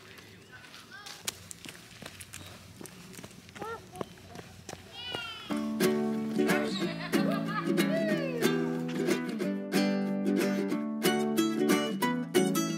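Quiet outdoor sound with faint scattered ticks and a few short high chirps, then background music with bright plucked-string chords coming in about halfway through and carrying on to the end.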